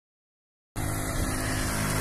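Silence at first, then a little under a second in, a motor vehicle's engine hum starts abruptly and runs steadily, as when the recording cuts in on a road.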